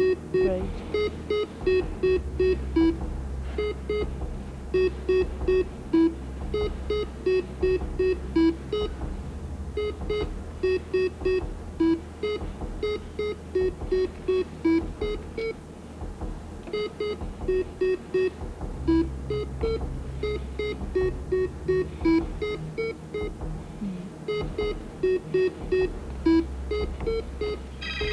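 Electronic game-show beeps in quick runs, each run ending on a lower, longer note and recurring about every three seconds, over a steady low synth drone: the cue for a timed button-sequence puzzle on a round module.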